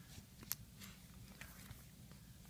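Near silence: room tone with a low hum and a few faint handling clicks, the sharpest about half a second in.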